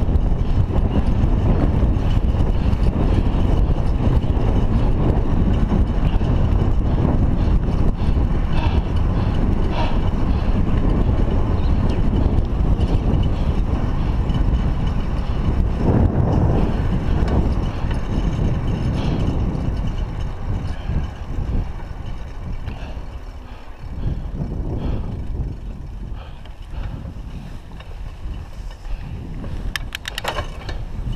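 Wind rumbling on an action camera's microphone and the tyre and road noise of a bicycle riding along tarmac. The noise is steady, with a brief louder surge about midway, and eases off somewhat over the last third.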